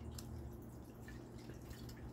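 Liquid poured from a swing-top glass bottle, faintly dripping and trickling onto a plate.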